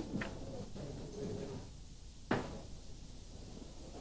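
Faint room sounds with a light click at the start and one sharper knock a little over two seconds in.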